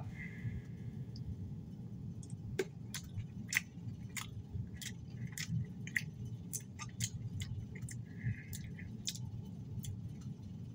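A person chewing Skittles Littles candies: sharp, irregular clicks, a few a second, over a low steady hum.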